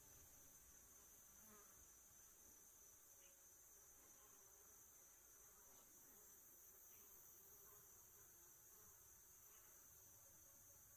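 Near silence, with a faint steady buzzing hum from a low-profile bladeless ceiling fan running.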